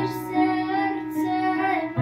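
A young girl singing a Polish Christmas lullaby carol, holding long notes, over instrumental accompaniment.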